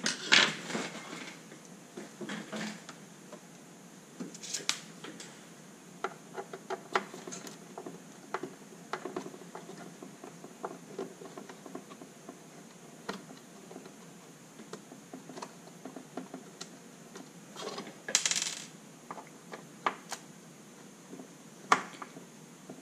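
Scattered light clicks, taps and scrapes of hands and a small screwdriver working on a car instrument cluster's plastic housing and circuit board, with a brief louder scrape about 18 seconds in and a sharp click near the end.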